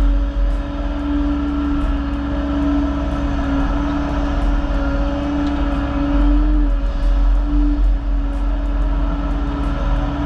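Excavator's diesel engine and hydraulics running steadily under load as the bucket digs out sod and dirt, a constant low drone with a steady hum over it.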